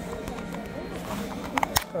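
Plastic gashapon capsule being cracked open by hand: a quick cluster of sharp plastic clicks about one and a half seconds in, over background shop music and chatter.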